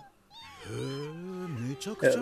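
Voiced cartoon creature calls: high gliding squeaks over a lower, drawn-out call that wavers down and up, starting just after a brief gap.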